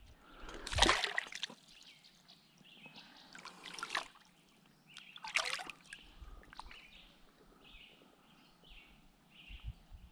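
Water splashing and trickling as a smallmouth bass is let back into a shallow creek, the loudest splash about a second in and smaller ones after. A few faint bird calls come later.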